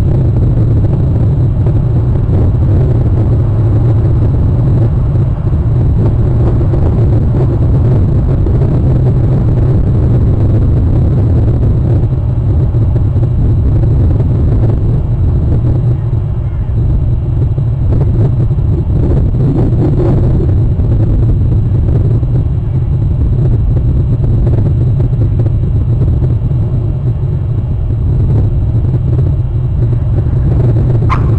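A loud, steady low rumble that barely changes, with no clear bird calls standing out.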